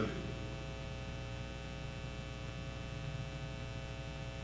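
Steady electrical mains hum with a faint hiss beneath it, in a pause between spoken sentences.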